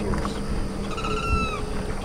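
A single high-pitched animal call, about two-thirds of a second long, starting about a second in; it holds its pitch and then drops at the end. Underneath runs a steady low rumble.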